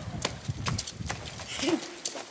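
Quick, irregular footsteps of children running on pavement, a rapid patter of sharp steps, with a brief child's voice near the end.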